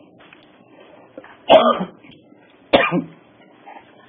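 A man coughs twice, short and sharp, about one and a half seconds in and again just over a second later.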